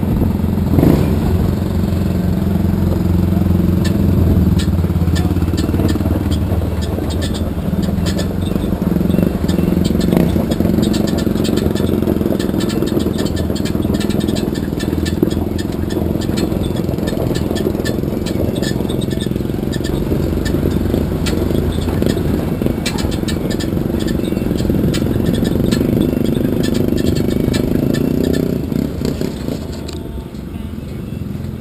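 Chevrolet S10 Blazer's engine running at low speed as the truck rolls across a gravel lot, with scattered crackle from the tyres on the stones.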